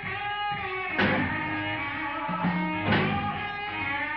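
Blues-rock band playing an instrumental break, the electric guitar holding sustained, bending lead notes over bass and drums, with sharp accents about a second in and again near three seconds.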